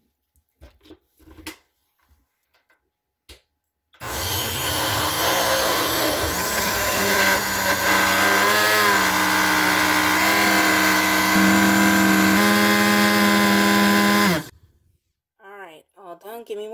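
Countertop glass-jar blender running for about ten seconds, blending a thick sour-cream and roasted-red-pepper sauce; its steady motor hum shifts slightly in pitch a couple of seconds before it cuts off abruptly. A few light clicks come first as the lid is fitted.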